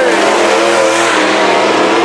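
Several IMCA SportMod dirt-track race cars' V8 engines running together, one car passing close. The engine notes waver slowly over a steady rush of noise.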